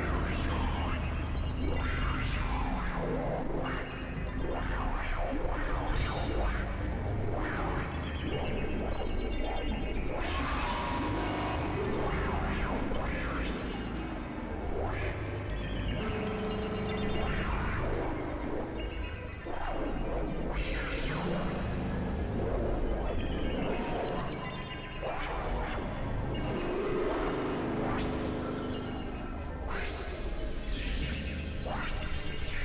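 Experimental electronic synthesizer music: layered drones over a steady low rumble, with short held tones and repeated pitch sweeps.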